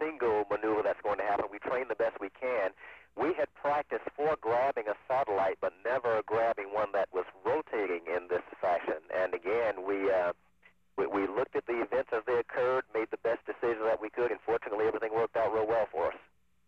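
A man speaking over a narrow, radio-like voice link, with a short pause about ten seconds in.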